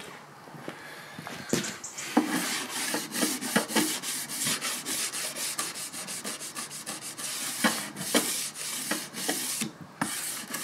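A hand-held cleaning block rubbed back and forth along the metal rail tops of model railway track, in quick repeated scrubbing strokes starting about a second and a half in. It is scrubbing fresh weathering paint off the running surfaces of the rails.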